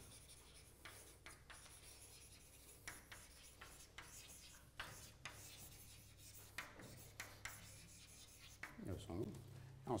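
Chalk writing on a blackboard: faint, irregular taps and scratches of chalk strokes.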